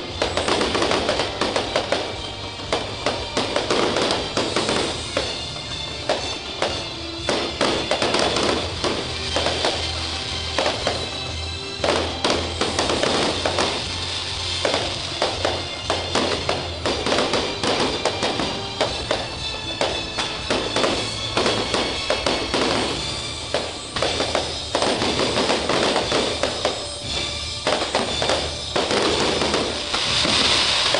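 Fireworks bursting overhead: repeated sharp bangs and crackles, about one every second, over music with a steady bass line.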